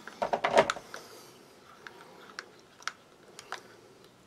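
A spoon clicking against a ceramic mug while stirring powdered potato and leek soup into hot water: a quick run of clicks in the first second, then a few scattered taps. The powder is clumping and not blending well.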